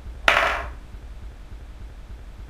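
A metal chess piece falls onto the chessboard: one sharp clack about a quarter-second in, with a short metallic ring that dies away within half a second.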